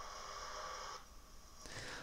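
Faint background noise of the played-back footage: a steady hiss carrying several steady high tones, which drops away about a second in at the cut between two clips, leaving a quieter, different room tone. This is the change in background sound at the edit point, which a crossfade is needed to smooth.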